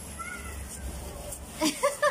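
High-pitched voice sounds: a faint short squeal about a quarter second in, then a quick run of louder syllables near the end that breaks into laughter.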